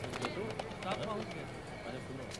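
Busy street ambience: faint background chatter of passers-by with scattered small clicks and knocks.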